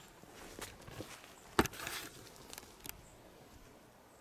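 Footsteps through leaf litter and patchy snow on a forest floor, with soft irregular crackles and one sharp snap about a second and a half in.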